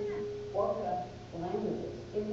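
A woman's voice, lecturing, with a steady faint tone under it.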